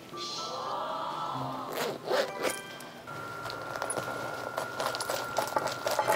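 Light background music with comic sound effects, and a zipper rasping in a few quick strokes about two seconds in, the zip of a clear plastic pouch of toys being opened.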